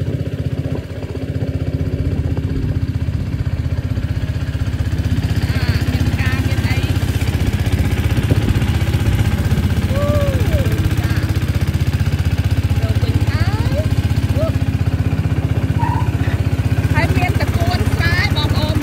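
Small motorboat engine running steadily as the boat moves along a canal.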